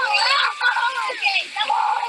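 A group of children shouting and shrieking excitedly over one another. Under the voices runs the rush of a large volume of water gushing out of a hose onto grass.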